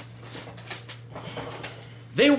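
A person settling back into his seat: a few soft rustles and shuffles over a steady low hum.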